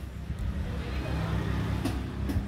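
Steady low outdoor rumble of street noise, with a faint click shortly before the end.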